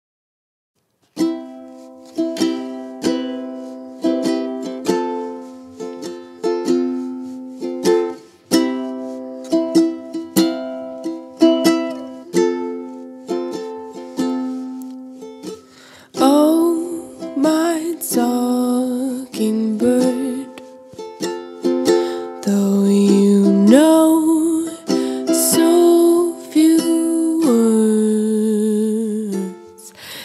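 Ukulele strumming chords in a steady rhythm, starting about a second in. About halfway through a woman's voice starts singing the song over it.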